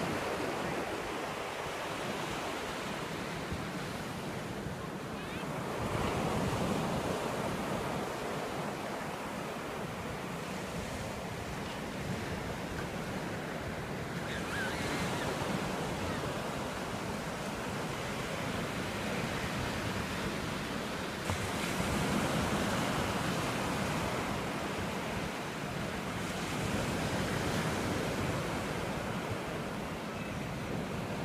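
Ocean surf washing up a flat sandy beach: a steady rush of breaking waves that swells every six to eight seconds. Wind buffets the microphone underneath.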